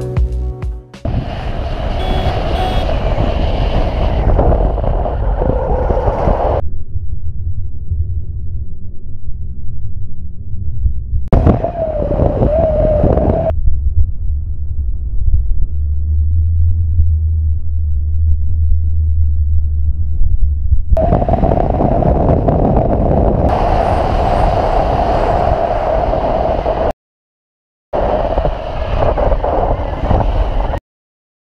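Motorcycle riding sound picked up by a bike-mounted camera: engine and wind noise, changing abruptly at several cuts, with a brief dropout near the end.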